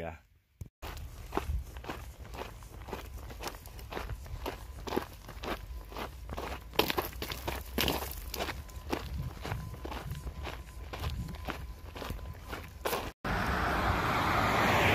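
Walking footsteps crunching on a gravel road at a steady pace, about two steps a second, over a low rumble.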